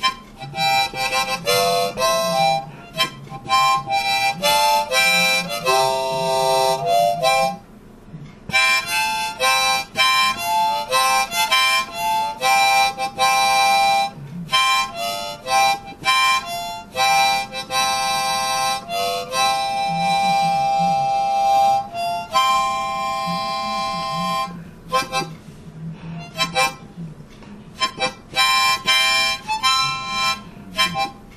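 Solo harmonica improvisation: runs of short notes, a brief pause about eight seconds in, a long held note around the middle, and shorter, sparser notes near the end.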